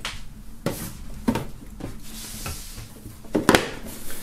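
Hands handling a cardboard album box set and its contents: a series of soft knocks and taps with light rustling, the sharpest two knocks close together near the end.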